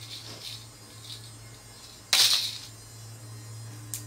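A short rustle of a knit top on a plastic hanger being picked up, about two seconds in, over a steady low electrical hum; a sharp click near the end.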